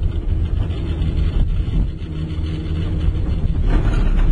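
Steady low rumble and hum of a Killington gondola cabin running along its haul rope, with a rougher rattling clatter building near the end.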